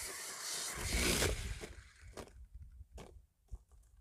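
Arrma Senton 3S BLX RC truck crashing on grass: a rough rush of noise lasting just over a second, then a few scattered knocks.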